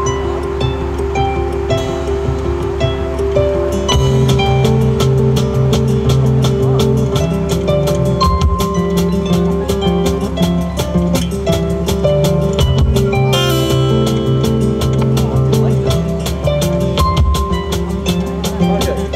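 Live acoustic band playing an instrumental passage. Picked acoustic-guitar notes open it, and a drum kit with a steady beat and a bass line comes in about four seconds in. A short drum fill falls about two-thirds of the way through.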